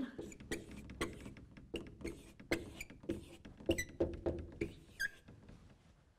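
Dry-wipe marker writing on a whiteboard: a run of short, irregular strokes and taps, with a couple of brief high squeaks near the end.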